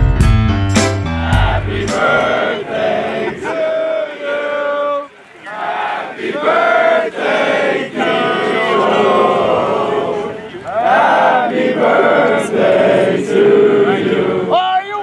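A piano music track ends about two seconds in; then a group of football players sing together in unison, in drawn-out phrases with short breaks.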